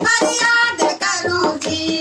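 Two women singing a Garhwali devotional bhajan to Vishnu, accompanied by a dholak hand drum.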